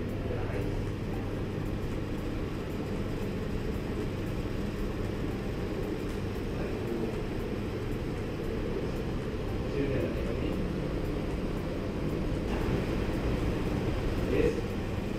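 Steady low background rumble with a faint hum, and faint voices about ten seconds in and again near the end.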